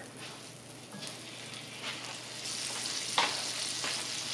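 Butter melting and foaming in a hot cast iron skillet, with a fine sizzle that grows louder as it heats while a silicone spatula pushes it around. A single short click comes about three seconds in.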